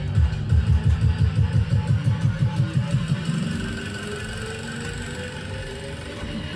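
Dance music track with a fast pulsing bass beat. About halfway through the beat thins out and a rising sweep builds up.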